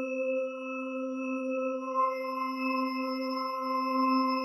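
Ambient electronic intro drone of several held pure, tuning-fork-like tones stacked at different pitches, pulsing gently, with further higher tones joining about two seconds in.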